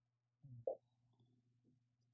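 Near silence: a faint low room hum, with one short faint sound about two-thirds of a second in.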